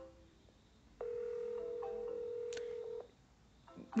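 Electronic telephone tones from the softphone as the call is hung up: a few short beeps stepping in pitch, then a steady tone lasting about two seconds, with a brief click partway through.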